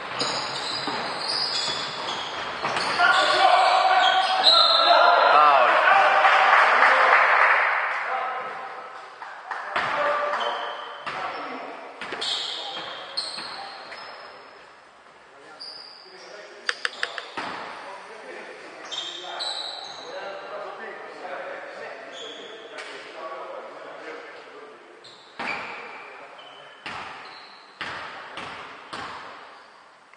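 A basketball bouncing on a hardwood gym floor, each knock echoing in a large, nearly empty hall, with players' voices loud in the first several seconds. Later come scattered single bounces, and in the last few seconds a run of repeated bounces as the ball is dribbled at the free-throw line before a shot.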